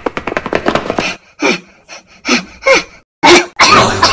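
A performer's voice panting and gasping for breath, out of breath after running: a quick run of short pants, then a few separate gasps, and the loudest heavy breath near the end.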